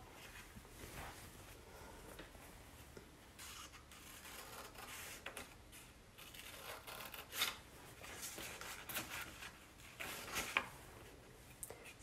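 Scissors cutting through a folded sheet of black construction paper: faint, scattered snips, with a few louder ones in the second half.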